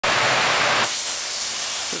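A steady hiss that changes just under a second in, from a fuller rushing noise to a thinner, higher hiss.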